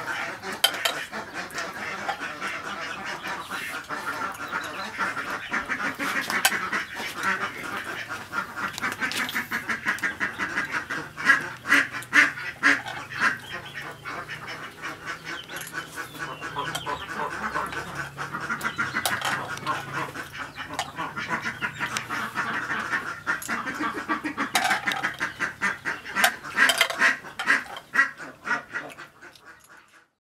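Close-up eating sounds: a woman chewing and slurping soup from a spoon, a steady run of quick wet mouth clicks and smacks that fades out near the end.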